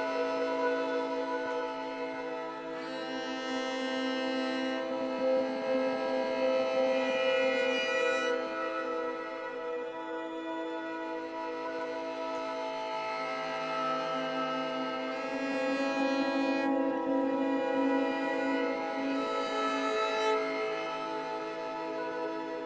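A three-note drone bowed on a Dvina and run through the Wingie2 resonator's tuned caves with effects, giving steady layered tones, with a short Microcosm loop playing over it. A brighter shimmer on top swells and fades several times.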